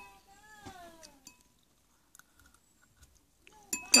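A faint, high-pitched drawn-out vocal sound, rising and then falling over about a second, followed by a few faint ticks.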